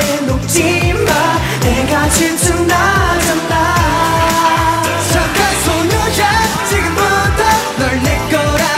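Male K-pop boy group singing in Korean over a pop backing track with a steady kick-drum beat.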